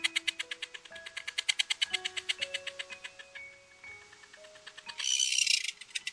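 Tropicbird call: a fast, even rattle of about nine sharp notes a second that fades out after about three and a half seconds, then a short harsh screech about five seconds in. Light background music with a slow stepping melody plays underneath.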